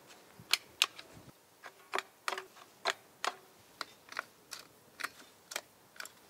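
Sharp plastic clicks, about two a second and unevenly spaced, from the trigger and safety switches of handheld power saws being pressed and released.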